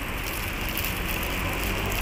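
Steady outdoor street background noise: an even hiss over a low rumble, with no separate events.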